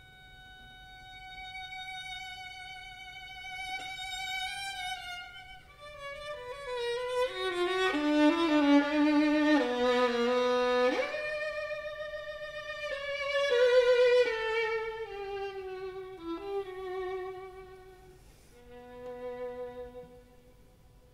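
String octet of violins, violas and two cellos playing a slow movement (Andante sostenuto) live: held, bowed notes that start quiet, swell twice to loud passages in the middle and fall back to quiet near the end.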